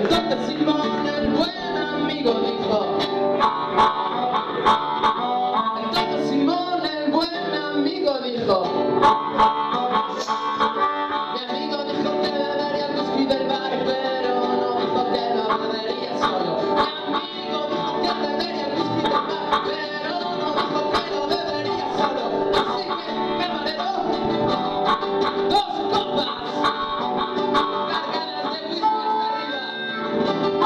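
Acoustic guitar strumming with a harmonica playing a blues instrumental, amplified through the PA, with sharp percussive taps on the beat.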